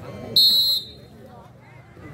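Referee's whistle: one short, steady, high-pitched blast of about half a second, signalling the serve, over faint crowd voices.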